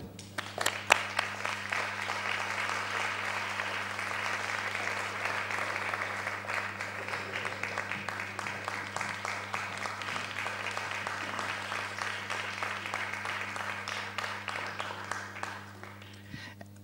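Theatre audience applauding, a dense, even clapping that starts at once and tapers off near the end, over a steady low electrical hum.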